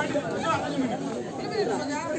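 Crowd chatter at a kabaddi court: many voices talking at once, overlapping, with no single voice standing out.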